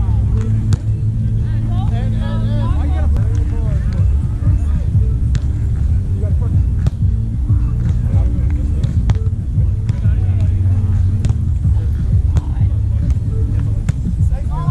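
Beach volleyball rally: repeated sharp slaps of hands and forearms on the ball, one every second or two, over a loud, steady low rumble. Players' voices call out now and then, and background music plays.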